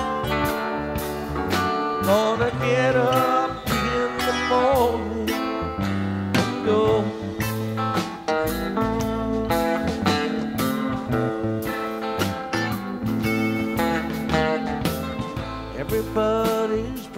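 A live rock band playing an instrumental break. The electric lead guitar carries the melody with bent, gliding notes over bass and drums.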